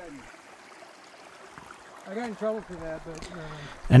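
Small shallow creek trickling over rocks, with a voice speaking briefly and at a lower level in the middle.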